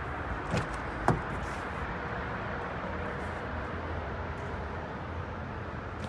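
Doors of a 2017 Toyota Sequoia SUV being handled: two short knocks about half a second apart, the second louder, then a steady background hiss.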